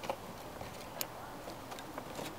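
Plastic air filter housing cover being handled and fitted back in place under the cowl: a sharp click about a second in and a few faint ticks near the end.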